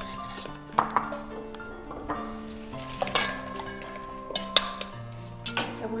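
Eggs being cracked by tapping them with a knife over a stainless steel mixing bowl: several sharp clicks and clinks, over soft background music.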